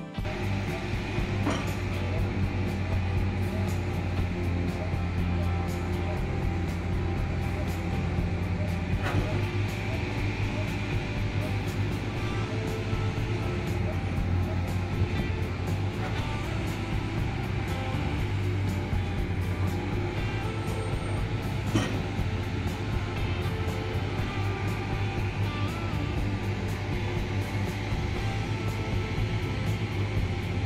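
Background music mixed with the steady low hum of heavy construction machinery, with scattered knocks and clanks running through it.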